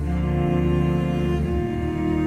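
Orchestral film-score music playing long held chords, with the chord changing about one and a half seconds in.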